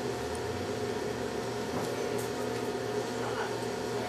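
Steady low hum with a soft hiss, an even room drone with no distinct events.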